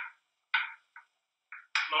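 A man's voice in short, broken phrases with near-silent gaps between them, running into continuous talk near the end.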